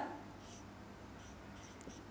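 Faint scratching of a marker drawing lines on a whiteboard, in a few short strokes.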